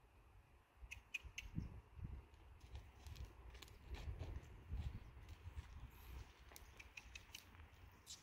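Faint, soft thuds of a horse's hooves walking on a sand arena, with a few faint clicks about a second in.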